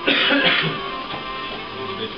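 A person coughs or clears their throat, one harsh burst in the first half second or so, over steady background music.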